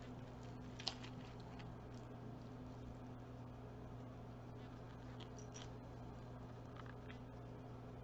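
A steady low hum, with a few faint clicks and taps from small metal jewelry being handled. The sharpest click comes just under a second in.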